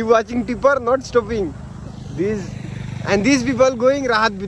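Voices talking loudly, with a steady vehicle engine hum heard underneath in a pause around the middle.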